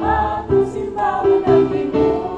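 A choir singing a hymn, the voices holding and changing notes in a steady flow.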